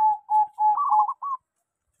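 Zebra dove (perkutut) cooing: a rapid run of short, clipped coos, about four or five a second, the last few pitched higher, stopping about a second and a half in.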